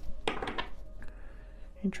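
Only speech: a brief soft utterance about half a second in, and the start of a spoken word near the end, with quiet room tone between.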